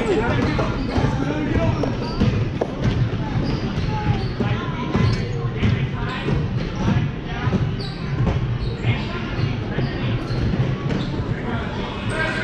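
A basketball bouncing on a gym floor again and again, with a steady background of chatter from players and spectators.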